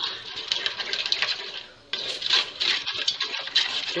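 A spoon stirring a thickening flour-and-broth mixture in an aluminium pot, with fast scraping and knocking against the metal; the stirring stops for a moment near the middle, then goes on.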